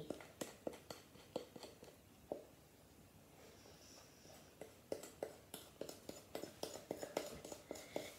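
Faint clicks and scrapes of a utensil working brownie batter out of a tipped mixing bowl into a baking tray, several a second, with a quieter lull in the middle.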